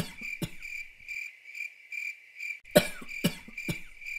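A person coughing in short fits, a few coughs at the start and another fit of three coughs near three seconds in. Under them runs a steady high chirp, repeated about twice a second.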